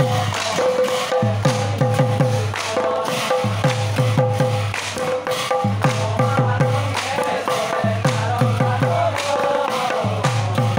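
Assamese naam devotional music: men singing together over a hand-played barrel drum and cymbals. The drum beats quick runs of deep strokes that drop in pitch, separated by short gaps, while the cymbal clashes keep a steady pulse above.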